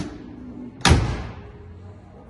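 The door of a 1956 Ford Thunderbird swung shut, one solid thud about a second in that dies away within half a second.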